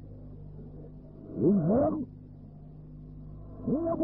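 A pause in a man's speech on an old tape recording: a steady low hum with faint hiss, broken by one short spoken word about a second and a half in.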